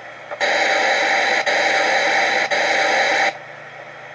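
Steady static hiss from a played-back audio recording, lasting about three seconds and cutting off suddenly, with two faint clicks in it.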